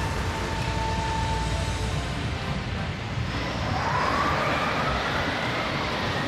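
Dense, loud rush of churning, splashing water in an anime sound-effects mix, with a deep rumble beneath. A steady high tone holds for the first two seconds, and a second tone glides upward in pitch from about three and a half seconds in.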